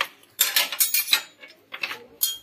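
Metal clinking and rattling of a telescoping snake-handling stick as its sections are pulled out and handled: a quick run of sharp clicks from about half a second in, then a shorter few near the end.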